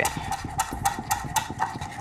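Chef's knife thin-slicing green onions on a wooden cutting board: a quick, even run of knife taps on the board, about six or seven a second.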